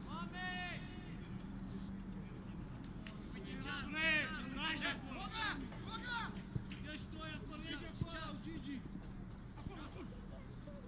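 Players shouting and calling to each other across an outdoor football pitch: one raised call near the start, then a run of overlapping shouts in the middle, over a steady low hum. A couple of sharp knocks sound near the end.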